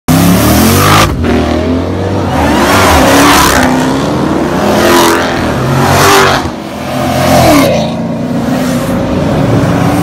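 Loud car engines revving and accelerating, the pitch climbing and dropping back about five times, with a steadier engine note over the last two seconds.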